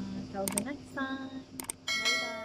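Subscribe-button animation sound effects: mouse clicks, twice, a short chime, and a bell ding starting near the end that rings on.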